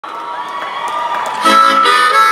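Concert crowd cheering, then about a second and a half in a harmonica starts playing loudly through the PA, held cupped against the microphone.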